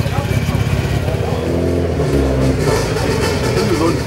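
Rally car engine running at low revs with a throbbing beat, its pitch changing about halfway through, over people talking.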